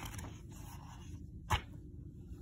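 Paper rustle of a picture-book page being turned, then a single short, sharp tap about a second and a half in.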